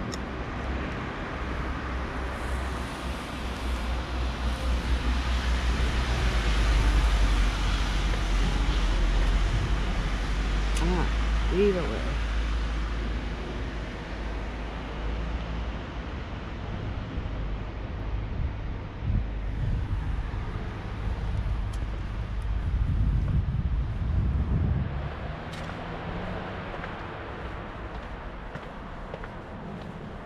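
Road traffic passing: a low vehicle rumble swells over several seconds, peaks and fades, then a second vehicle passes later on.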